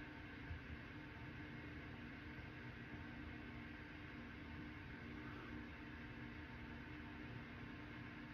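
Quiet room tone: a steady low hum with faint hiss, and one small tap about half a second in.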